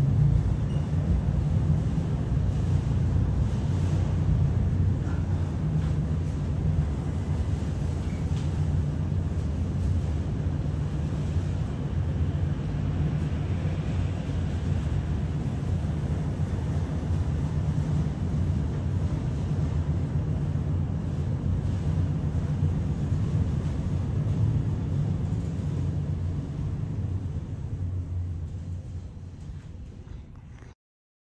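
Cab noise of a ThyssenKrupp high-speed geared traction elevator travelling up its express run at 1200 feet per minute: a steady low rumble with a light rush of air. It fades over the last few seconds.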